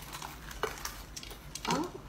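Breaded fried chicken being torn apart by hand: scattered small crackles and clicks of the crisp crust. A brief vocal sound near the end.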